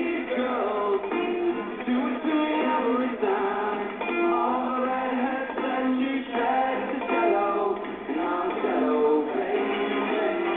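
Live rock band playing: a male lead vocal sung over electric guitar. The recording sounds thin, with the bass and treble cut away.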